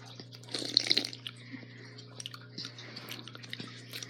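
A drink gulped from an aluminium soda can, with a short burst of slurping and swallowing about half a second in, then faint mouth clicks, over a steady low hum.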